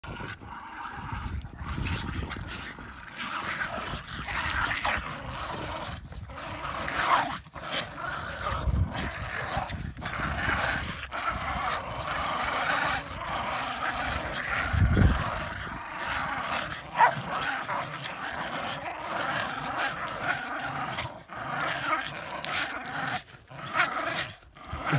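Several small dogs growling steadily while they tug and hang on a snow-covered branch.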